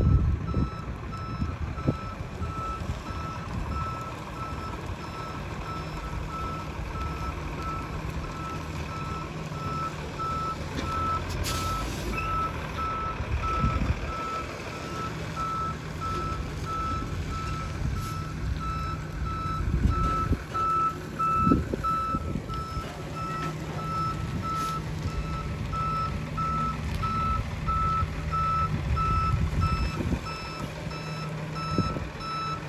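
A box truck's backup alarm beeping steadily, about two beeps a second, as the truck reverses slowly over the low, steady running of its engine. A few low thumps come near the start and again about two-thirds of the way through.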